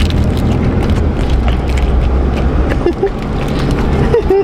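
Steady low rumble of car cabin noise, engine and road sound inside a car, with a brief voice sound about three seconds in.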